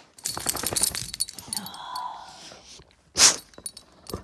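Metallic jingling and clinking for about a second and a half, then a short, steady whine and a sharp burst of noise near the end.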